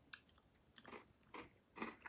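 Faint crunching of a mouthful of s'mores snack mix (chocolate, marshmallow and graham cracker clusters) being chewed: a few short crunches about half a second apart.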